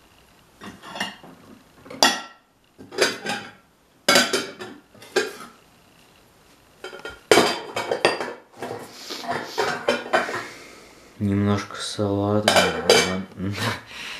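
Kitchen dishes and cutlery being handled: a run of clatters, knocks and clinks of crockery and utensils as someone rummages through them. A man's voice mutters near the end.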